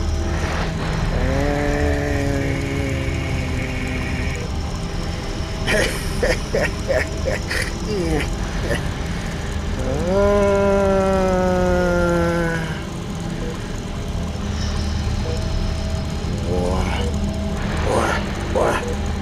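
Edited-in sound effects: long, drawn-out pitched tones that slide in pitch over a steady low hum, with a quick run of sharp clicks about six seconds in.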